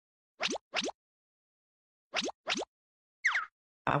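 Popping sound effect: quick upward-sweeping 'bloop' pops, two rapid pairs followed by a single pop, with dead silence in between.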